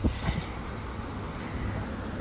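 Wind rumbling on the microphone, with a brief hiss right at the start.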